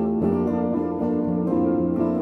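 Guitar music: plucked notes ringing over a steady bass line in an even rhythm.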